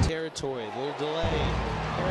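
Football game broadcast sound with no commentary: a brief voice whose pitch slides down and back up in the first second, then a steady stadium background.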